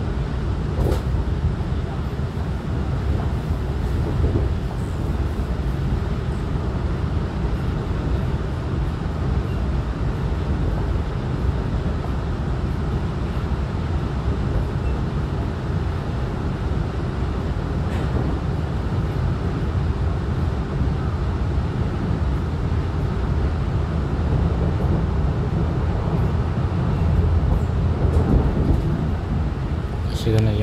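An EMU900 electric commuter train in motion: a steady, even running rumble, a little louder near the end.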